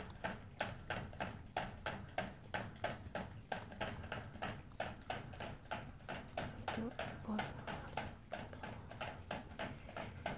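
Toy poodle drinking from a crate-mounted water nozzle, licking it in a steady rhythm of sharp clicks, about four to five a second.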